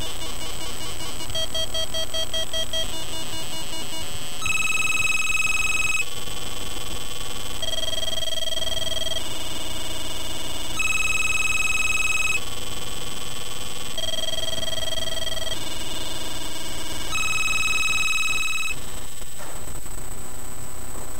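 1-bit square-wave tones from a breadboard CMOS logic-chip oscillator and step sequencer playing through a small speaker. Fast pulsing notes in the first few seconds give way to a four-step loop of held notes, each about a second and a half long, that repeats about every six seconds. The tones stop just before the end.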